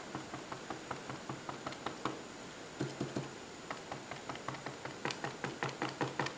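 Spoolie brush loaded with acrylic gouache tapped on paper again and again to stipple foliage: faint, quick, uneven light taps.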